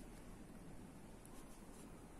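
Faint scratching of a ballpoint pen on paper.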